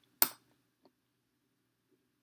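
A checker piece set down with one sharp click onto the stack of captured pieces, followed by a much fainter tick just under a second in.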